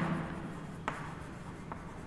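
Chalk writing on a chalkboard: faint scratching strokes with a few short, sharp ticks of the chalk against the board.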